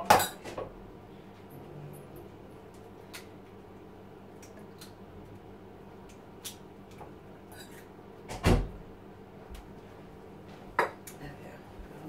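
Scattered light clinks and knocks of kitchen crockery and utensils at a counter, with a sharp knock at the start, a heavier thump about eight and a half seconds in, and a sharp click near the end.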